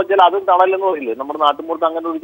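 Speech only: a person talking steadily in Malayalam.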